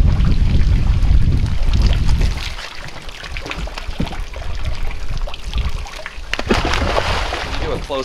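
Water splashing and sloshing as trout are scooped out of a stocking truck's tank with a long-handled dip net and thrown into a pond. There is a heavy low rumble for the first two seconds or so, and a longer loud splash about six and a half seconds in.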